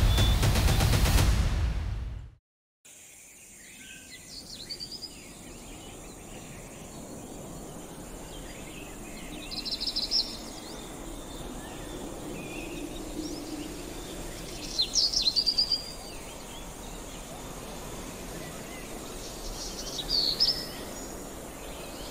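Music that cuts off abruptly after about two seconds, then a steady natural outdoor ambience with birds chirping in short bursts, four times, the loudest about two-thirds of the way through.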